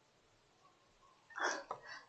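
Near silence, then about one and a half seconds in a short, sharp breath in, a mouth sound just before speech.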